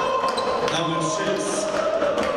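Basketball court sounds in a large hall: short knocks and sneaker squeaks on the hardwood floor over a steady murmur of voices.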